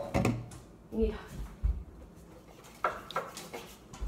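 Scattered light knocks and handling noise of a plastic measuring cup and cans on a hard tabletop, with a brief murmur from a child about a second in.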